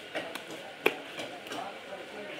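Knife cutting into a large catfish on a wooden chopping block: a few short sharp knocks, the loudest about a second in.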